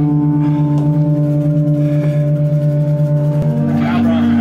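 A live band's sustained, droning chord played through the amplifiers, held steady with no drums, shifting to a new chord about three and a half seconds in.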